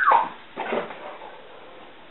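Excited dog giving a high whine that drops in pitch right at the start, followed by a second, shorter sound about half a second later.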